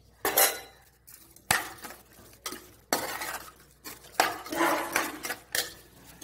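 A perforated steel spoon scraping and clinking against a metal pressure cooker pot as thick vegetable kurma is stirred to mix in the spice powder. There are several separate strokes, with a sharp knock about a second and a half in and longer scrapes in the second half.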